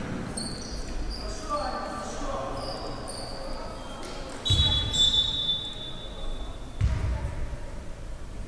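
Basketball court sounds in a large gym: sneakers squeaking on the floor, voices, and a ball thudding. A steady high tone sounds for about two seconds, starting just past the middle.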